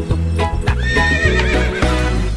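A horse whinnying once, a wavering, falling call about a second in, over background music with a steady beat.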